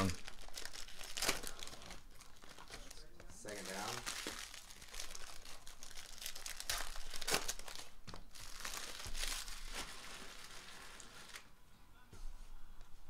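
Foil trading-card pack wrappers being torn open and crumpled by hand: a continuous crinkling broken by several sharper crackles.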